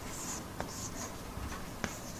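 Faint scratching strokes of writing, a few short soft scrapes with two light taps, over a steady room hiss.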